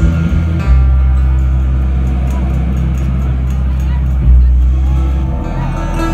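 Live bluegrass string band playing amplified through a theatre PA, with a deep sustained low note held from about a second in until shortly before the end, when plucked string notes take over.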